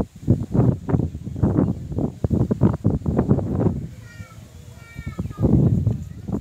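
A run of irregular knocks and rustles, then a few short, high animal calls about four seconds in, each one dipping in pitch.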